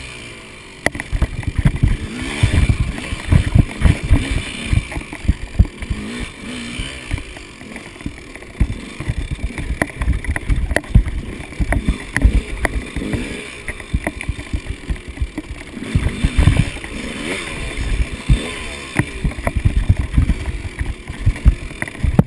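KTM 200 XC two-stroke dirt bike engine revving up and down over rough trail, the pitch rising and falling with the throttle. Frequent loud low thumps run through it.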